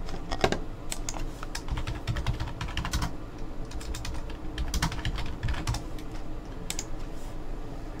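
Typing on a computer keyboard: irregular key clicks, some louder than others.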